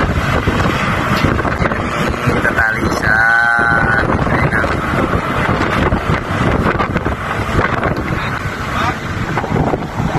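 Loud, steady deck noise on a ship: machinery rumble mixed with wind on the microphone, with a brief pitched sound about three seconds in.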